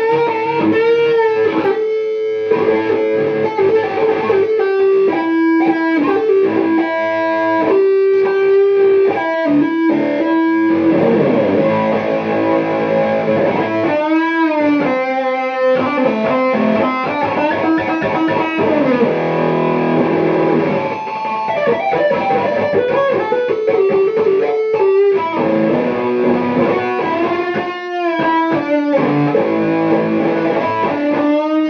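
Distorted electric guitar playing a blues lead, with long sustained notes, string bends and wide vibrato.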